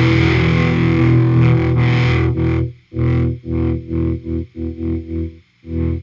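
Closing bars of a reggae song with distorted electric guitar: a full held chord, then a run of about eight short stabbed chords, ending abruptly on the last hit.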